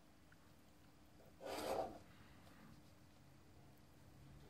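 A brief scraping rub, about one and a half seconds in, of plastic drawing instruments sliding over paper on a drawing board, over a faint steady hum.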